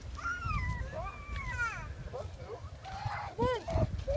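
Wind buffeting the microphone, with a series of high, gliding cries over it. The cries fall in pitch through the first two seconds, then come back louder as a couple of short arching calls near the end.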